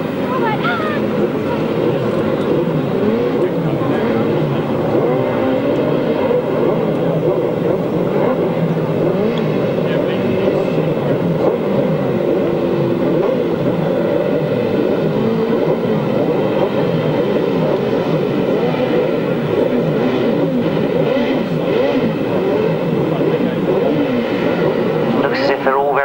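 Several grasstrack racing sidecar outfits' engines revving at the start line. Many overlapping rises and falls in engine pitch blend into one steady din as the crews wait for the tape to go up.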